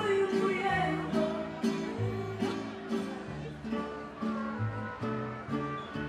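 Mariachi band playing live: strummed guitars in a steady rhythm over deep bass notes that change about once a second.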